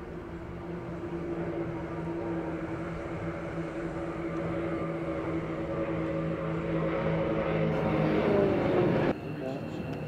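Propeller engines of a formation of Extra 330LX aerobatic aircraft droning overhead. The sound grows louder, dips in pitch around eight to nine seconds in as the aircraft pass, then cuts off suddenly just before the end.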